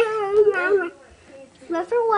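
A high-pitched voice holding a long, drawn-out vocal note, silly noise-making to get a baby to laugh; it breaks off just under a second in, and after a short quiet a voice starts again near the end.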